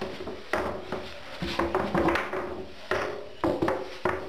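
Damp cloth wiped over mirror glass: rubbing with a few brief squeaks and several knocks.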